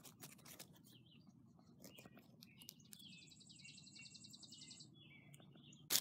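Faint crackling and rustling of dry fallen leaves as model horses are pushed through leaf litter, with bird chirps and a high rapid trill in the middle, and one sharp click near the end.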